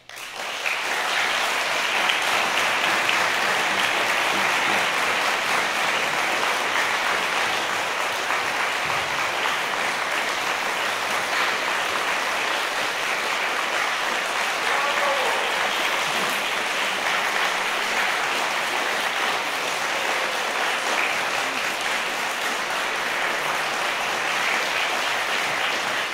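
Audience applauding, breaking out suddenly and holding at a steady level.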